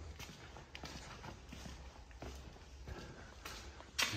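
Faint footsteps on a concrete shop floor, a short knock every half second or so at an uneven pace, over a low steady hum.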